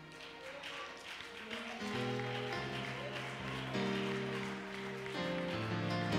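Church keyboard playing slow, sustained chords that swell in about two seconds in and shift a few times.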